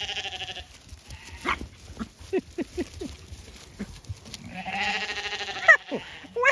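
Zwartbles sheep bleating: one quavering bleat ends about half a second in, and a second, about a second long, starts about four and a half seconds in.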